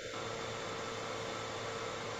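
Steady, faint hiss of room tone picked up by a video-call microphone, with a thin steady hum underneath.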